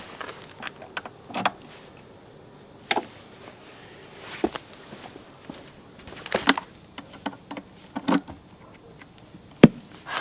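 Scattered knocks and clunks of gear being handled around a Fender guitar combo amp, about one every second and a half, with the sharpest knock just before the end.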